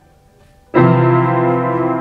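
A single low instrumental note starts just under a second in and is held steadily. It is a semibreve (whole note) sounded for a count of four beats to show its length.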